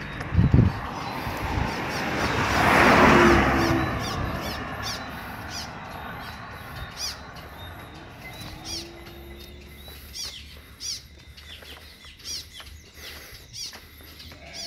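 A low thump just after the start, then a road vehicle passing close by, its noise swelling and fading about three seconds in. After it, a bird chirps again and again, a short call about once a second.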